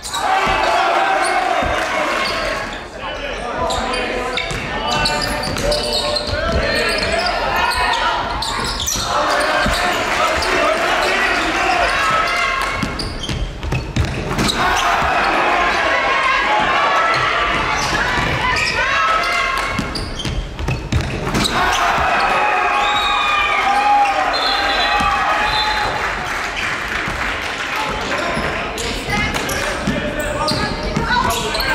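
Live game sound in an indoor basketball gym: a ball bouncing on the hardwood court amid the voices of players and spectators echoing around the hall, with short breaks where the sound drops out.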